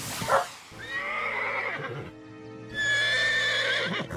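A mare whinnying in two long calls, the second starting near three seconds in: a distressed mother calling for her missing foal, sounding very upset. A short rushing noise comes first, over light background music.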